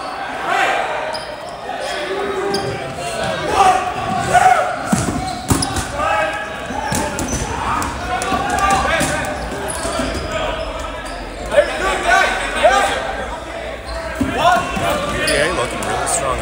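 Players and spectators talking and calling out, echoing in a gymnasium, with a few rubber dodgeballs bouncing on the hardwood floor.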